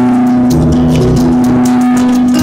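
Street guitarist playing: one note held throughout over changing bass notes, with quick plucked notes above.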